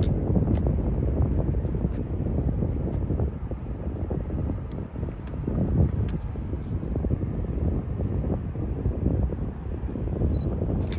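Wind buffeting the microphone: a steady, gusting low rumble with a few faint clicks scattered through it.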